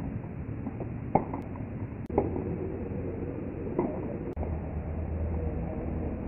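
Muffled, low-fidelity court sound: a few sharp knocks at irregular spacing, the loudest about a second in, typical of tennis balls struck by racquets. Under them run steady background noise and faint distant voices.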